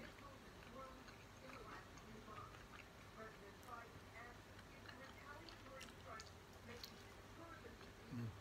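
Near silence with faint chewing of an egg sandwich: a few soft, scattered mouth clicks.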